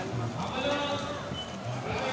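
Crowd chatter: many voices talking at once, with one wavering voice standing out above the rest.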